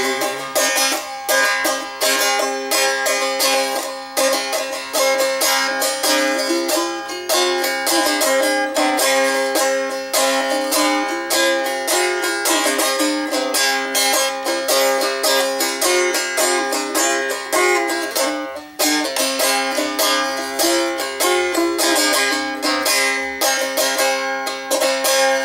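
Strumstick played solo in an instrumental break: a quick run of plucked and strummed notes over steady ringing drone strings, with a twangy sound somewhere between a dulcimer and a banjo. There is a brief dip about three-quarters of the way through.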